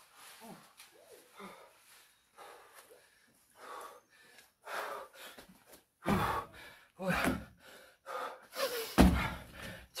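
A man's heavy, gasping breaths from hard exercise, then from about six seconds in, loud thuds of feet landing on a wooden deck during repeated jumps, roughly one a second, with panting between.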